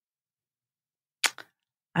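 Near silence, then a single sharp click with two smaller quick ticks right after it about a second and a quarter in, and a man's voice starting near the end.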